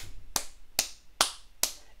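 One person clapping hands slowly, five claps at an even pace of about two and a half a second, as applause.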